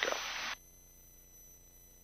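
The end of a spoken word over the headset intercom with its open-mic hiss, which cuts off abruptly about half a second in. After that, near silence with faint steady electronic tones.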